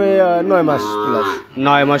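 Cattle mooing: one long moo lasting about a second and a half, lower in pitch by its end.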